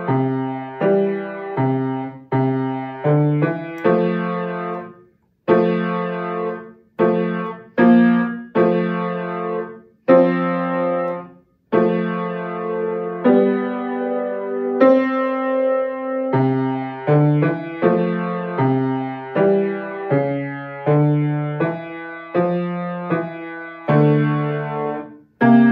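Piano played with the left hand alone: a simple accompaniment pattern of low single notes and broken chords, each note fading after it is struck. The playing goes at a steady, moderate pace with a few short breaks between phrases.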